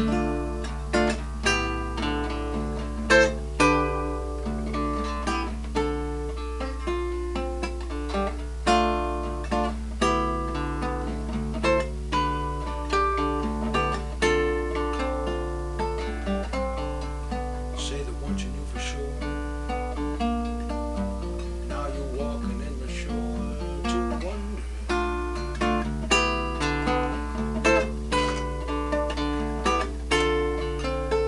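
Solo acoustic guitar played as an improvised instrumental passage of picked single notes and chords, each note ringing on, with a steady low hum underneath.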